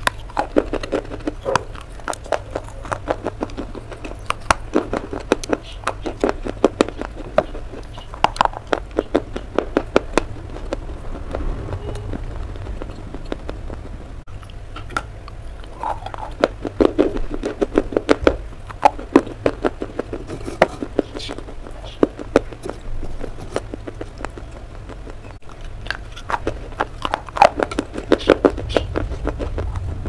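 Brittle pieces of slate clay being bitten and chewed close to the microphone: dense runs of sharp crunches come in several bursts, with quieter chewing pauses between them.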